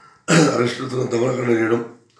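Only speech: a man talking, starting sharply about a third of a second in and stopping just before the end.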